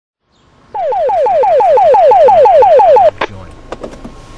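Electronic alert tone over a dispatch radio: a loud repeated falling sweep, about six a second, that stops abruptly after a couple of seconds. A few sharp clicks follow near the end.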